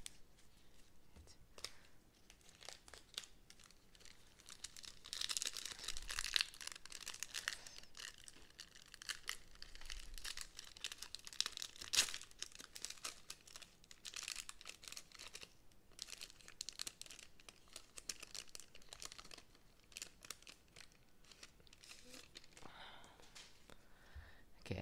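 Foil trading-card pack wrapper being torn open and crinkled by hand, in irregular crackling spells, with one sharp snap about halfway through.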